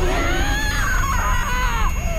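A woman screaming in terror: one long, high scream that wavers in pitch and breaks off near the end, over a low rumbling drone.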